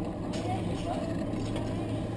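A vehicle engine running with a steady low hum, with faint voices over it.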